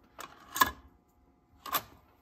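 Cassette being handled in and out of a Nakamichi 680ZX cassette deck's open cassette well and the door pushed shut: three sharp plastic clicks, the loudest about half a second in, another near the end.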